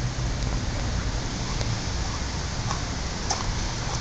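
A dog gnawing a cooked pig's trotter, with a few faint clicks of teeth on bone, over a steady hiss and a low hum.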